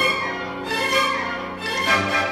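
Symphony orchestra playing a sustained passage led by the violins, dipping slightly in loudness and then swelling again near the end.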